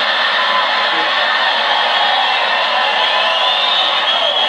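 Large live audience laughing and applauding at a punchline, loud and steady.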